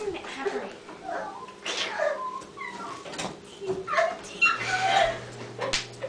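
High-pitched wordless vocal cries from a girl, with squeals, whimpers and giggles that bend up and down in pitch. A steady low hum starts about three-quarters of the way through.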